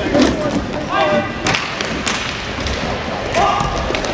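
Inline hockey play: repeated sharp knocks of sticks and puck against the floor and boards, with short shouted calls from players about a second in and near the end.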